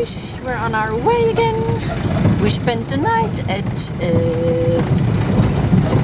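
Campervan engine and road rumble heard inside the cab while driving, a steady low drone under a high voice that holds some long level notes.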